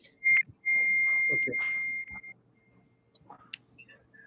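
A short high-pitched beep followed by a longer steady tone at the same pitch, lasting about a second and a half before trailing off, from a participant's audio on a video call.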